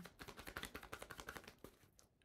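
Tarot cards being shuffled by hand: a fast, faint run of card clicks that thins out near the end.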